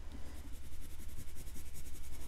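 Yellow oil pastel scribbling on drawing paper in quick back-and-forth strokes, a soft, steady scratching as colour is layered into a leaf drawing.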